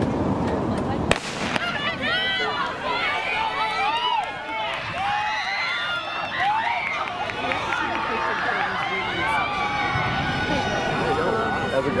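A starting pistol shot about a second in, then spectators yelling and cheering on the sprinters through the race.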